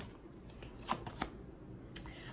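Oracle cards being handled and drawn from the deck by hand: faint card rustle with a few light, sharp clicks of card on card, two about a second in and one near the end.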